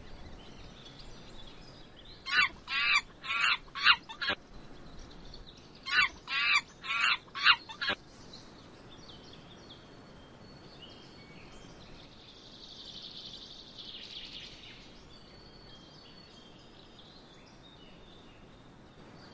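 A bird calling: two phrases of about five loud, wavering notes each, a couple of seconds apart, followed by faint chirps and a soft trill in the background.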